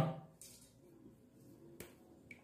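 Mostly quiet pause after a spoken word trails off, broken by one short, sharp click near the end.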